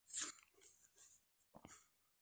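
A quiet pause holding one brief, faint mouth sound near the start, followed by a few tiny clicks.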